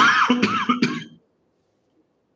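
A man coughing into his fist, a quick run of three or four coughs in the first second or so.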